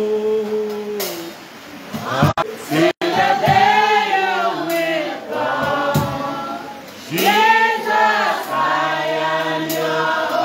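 A man's voice singing a slow worship song, with long held notes and gliding phrases, and a brief dropout in the sound about three seconds in.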